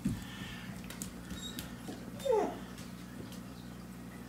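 A short, squeaky vocal sound falling in pitch about two seconds in, over a low steady hum and a few faint clicks.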